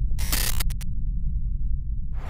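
Edited glitch sound effect: a steady low drone with a short burst of harsh static about a fifth of a second in, breaking off in a few quick stutters.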